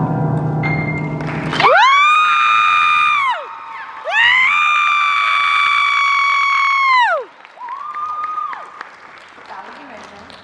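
A Yamaha grand piano's final notes ring out, then the audience applauds with three long, loud, high-pitched cheers, each sliding up, holding for one to three seconds and dropping away.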